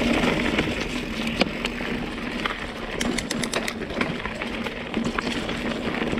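Mountain bike rolling over a leaf-covered dirt trail: steady tyre noise on dirt and dry leaves, with scattered rattles and clicks from the bike over bumps and a quick run of clicks about three seconds in.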